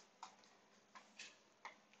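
Near silence with about four faint, short clicks spread over two seconds.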